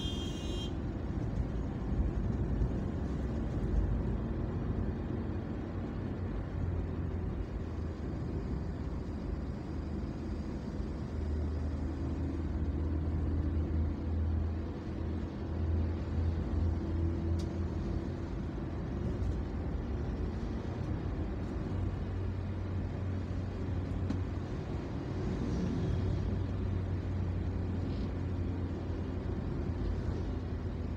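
Steady low road-travel rumble of a moving vehicle in city traffic: engine and tyre noise, rising and falling gently with speed. A brief high-pitched tone sounds right at the start.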